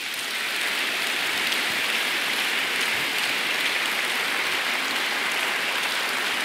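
Large audience applauding steadily in a hall. The clapping swells up right at the start, then holds at an even level.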